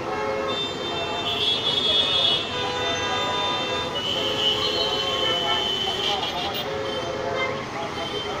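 Diesel excavators working, their engines running under a constant din, with several long pitched tones like horns sounding over it, overlapping one another.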